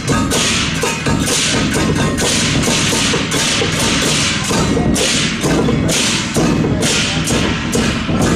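Many pairs of Chinese hand cymbals (bo) clashed together by a procession cymbal troupe, loud ringing crashes about twice a second in a steady marching rhythm.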